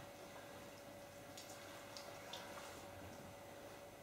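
Near silence: quiet room tone with a faint steady hum and a few faint, short rustles and ticks in the middle.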